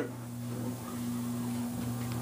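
A steady low electrical hum with a faint even hiss.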